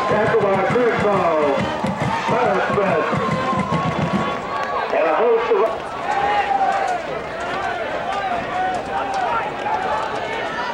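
Spectators in football stadium stands talking and calling out over one another, a steady hubbub of many indistinct voices.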